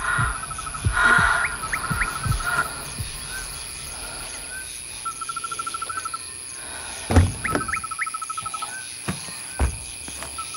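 Night insects, crickets, trilling in short rapid pulse trains of about a dozen pulses a second, with brief rising chirps between them. A few dull low thuds sound over them, the loudest about seven seconds in.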